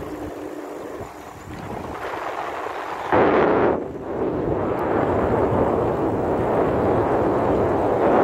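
Wind buffeting the microphone of a hand-held phone on a moving bicycle: a rough rushing noise that grows, then jumps much louder about three seconds in and stays loud.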